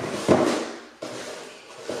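Tissue paper rustling and a cardboard shoebox being handled as a pair of toddler sneakers is unpacked. There is a sharp noisy rustle about a quarter second in and a softer one about a second in.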